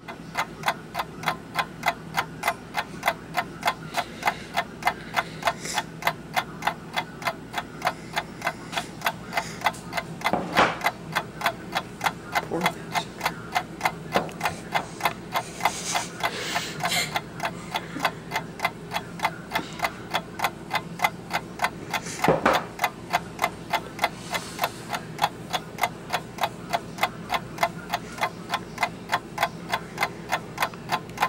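Steady, rapid clock-like ticking, about three and a half ticks a second, with a couple of louder knocks around ten and twenty-two seconds in.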